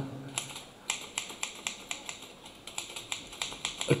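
Typewriter sound effect: a quick, uneven run of key strikes.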